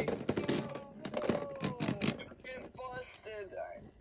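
Beyblade spinning tops striking each other and the plastic stadium in a run of sharp clicks, thickest in the first two seconds, under low voices.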